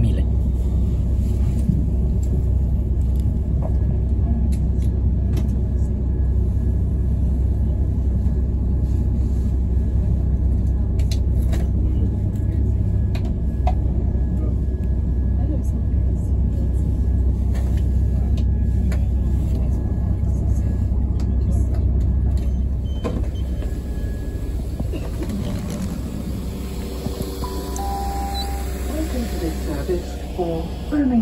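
Interior of a moving passenger train: a steady low rumble of running that eases off about two-thirds of the way through, with a few short electronic tones near the end.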